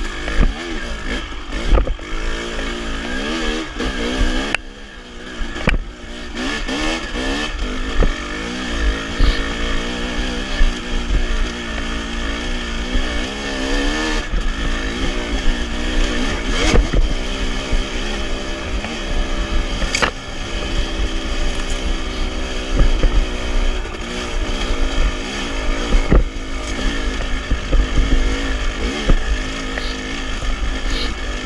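Dirt bike engine running as it rides a rough trail, its pitch rising and falling with throttle and gear changes and briefly dropping off about five seconds in. Low wind rumble on the helmet camera, and a few sharp knocks over rough ground, the loudest about twenty seconds in.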